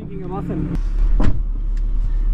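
Low, steady rumble inside a car's cabin, with a single sharp click a little over a second in.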